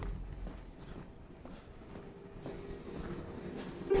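Faint footsteps, a few scattered soft ticks, over low background noise.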